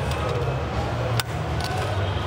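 A single sharp metallic click a little past a second in as a hand slides and sets an aluminium stop block in a T-track fence, over a steady low hum.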